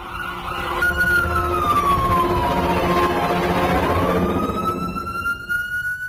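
A wailing siren, its pitch sliding slowly down over the first few seconds and then climbing back up, over a low steady rumble.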